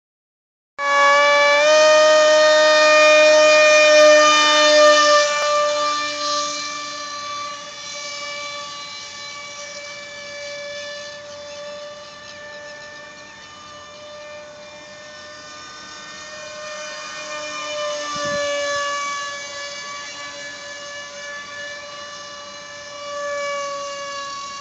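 Small brushless electric motor (a Skyartec BL002 helicopter motor) and propeller of a radio-controlled foam F-16 model jet, whining at a nearly steady high pitch with many overtones. It starts abruptly about a second in, is loudest for the first few seconds, then fades as the plane flies off and swells again around eighteen seconds and near the end as it comes closer.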